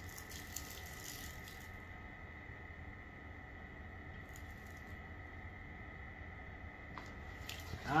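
Quiet background: faint steady noise with a thin, high, steady whine, and a few soft rustles in the first second or so and again around four seconds in.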